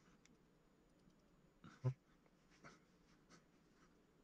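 Near silence with a few faint clicks and scrapes from a sculpting tool and fingers working modelling clay, and one louder short knock about two seconds in.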